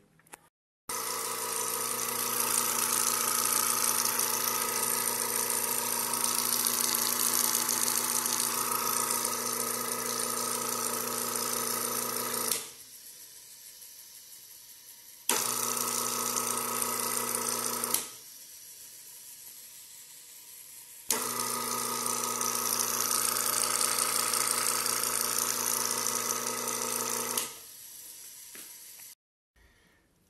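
Replacement electric motor belted to a Ferrari bench drill press, running with a steady hum and a hiss. The sound drops abruptly to a much quieter level twice and comes back each time, then drops again near the end.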